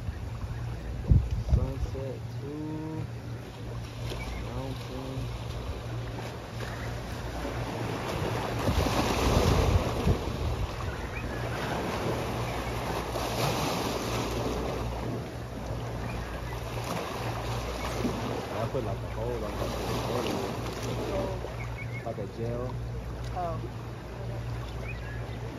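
Small sea waves washing over a rocky shoreline, swelling up and falling back every few seconds and loudest about ten seconds in, with wind on the microphone.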